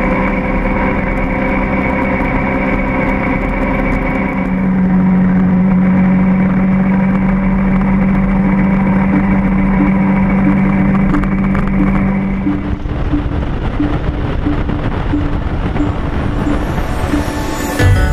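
Motorcycle engine running at a steady road speed, with wind and road noise. Its note changes about thirteen seconds in as the road turns into bends.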